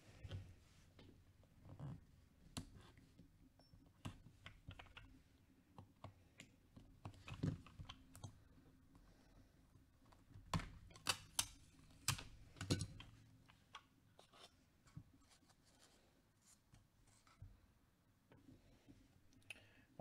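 Faint, scattered clicks and taps of trading cards and a clear plastic card box being handled, with a cluster of sharper clicks about ten to thirteen seconds in.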